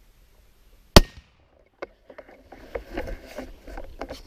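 A single rifle shot through a suppressor about a second in, sharp and loud with a quick decay, then a softer click and scattered small rustling noises.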